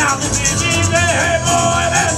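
Live country-style band: a harmonica plays bending, sustained notes over the scraped rhythm of a washboard, with acoustic guitar and upright bass underneath.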